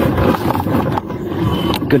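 Fluid Vista electric scooter's solid tyres rolling over a bumpy dirt trail: a steady rough rumble with rattling from the scooter.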